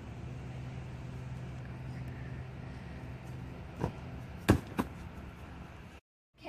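A steady low hum in the background, then three thumps in the second half, the middle one the loudest: a boy flipping off a wooden deck and landing on gym mats.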